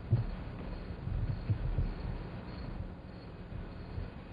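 Dull, muffled low thumps over a steady low hum: one just after the start and a cluster of several about a second later.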